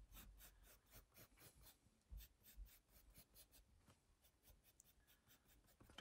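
Faint scratching of a pencil on sketchbook paper, drawn in many short, quick strokes.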